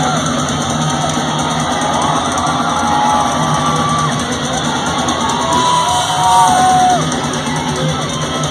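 Heavy metal band playing live and loud through a concert PA: distorted electric guitars over drums, with held, bending high notes about five to seven seconds in.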